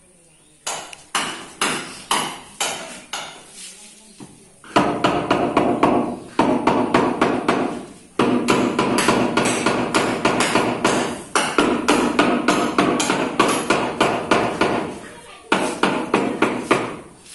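The end of a wooden hammer handle knocking on a marble floor slab laid on a sand bed, tapping it down level. A few separate knocks come first, then rapid, continuous tapping takes over for most of the rest, with a couple of short breaks.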